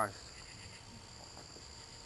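Steady high-pitched chorus of night insects, crickets and the like, a continuous trilling that carries on unbroken through a pause in speech.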